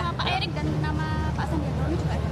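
People talking and laughing among a crowd, over a steady low background hum.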